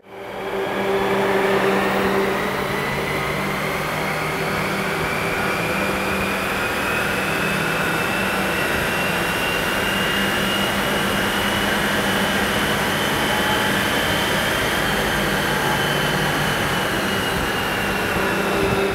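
Steady loud rush of a large chassis-dyno cooling fan, with a low hum under it and a thin whine that rises slowly in pitch over the first ten seconds or so, then holds.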